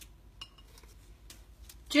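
Faint, scattered clicks and taps of an African grey parrot's beak rummaging inside a ceramic tea canister, a few light knocks over two seconds.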